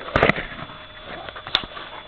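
Handling noise: a short burst of rustling and knocks just after the start, then quieter rustle and a single sharp click about one and a half seconds in.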